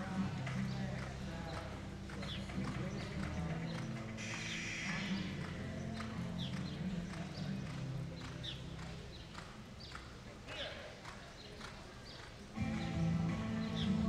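Background music with a steady low accompaniment, over a horse's hoofbeats on the dirt arena footing as it travels under saddle. The music dims for a few seconds and comes back louder near the end.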